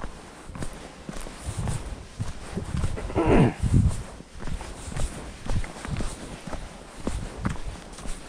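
Hiker's footsteps crunching on a dirt trail strewn with dry fallen leaves, about two steps a second, with a louder, longer burst of noise a little over three seconds in.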